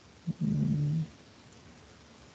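A man's brief closed-mouth hum ('hmm'), under a second long, starting about a quarter second in.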